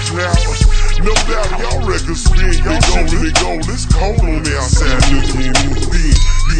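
Chopped and screwed hip hop: slowed, pitched-down rap vocals over a deep bass line and a drum beat.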